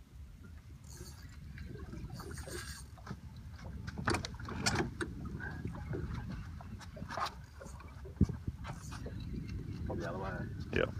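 Wind rumbling on the microphone and water moving around a small boat at sea, with brief hissing twice early on and a few short sharp clicks and knocks in the second half.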